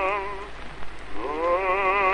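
Operatic baritone singing held notes with a wide vibrato, over the crackle of an early acoustic disc recording with orchestral accompaniment. The first note breaks off about half a second in, and after a short gap the voice slides up into a new held note.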